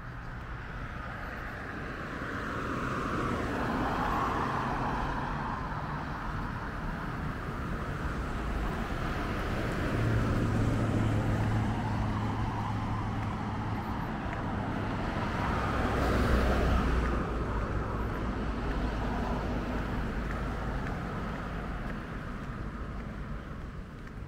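Road traffic: cars passing on a street, the sound swelling and fading as each goes by, loudest about four seconds in and again around sixteen seconds, over a low rumble.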